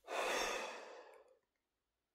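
A man's long sigh, breathed out through the mouth: loud at the start and fading away over about a second and a half.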